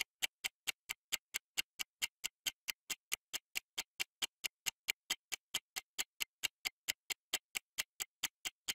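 Countdown-timer ticking sound effect: short, evenly spaced clock-like ticks, about three to four a second.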